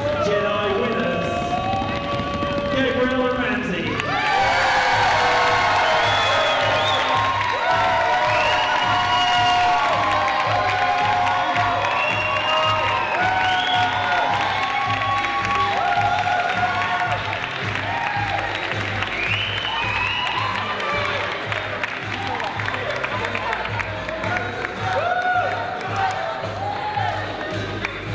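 Crowd applauding and cheering over music with a steady beat; the applause and cheers swell about four seconds in and stay loud.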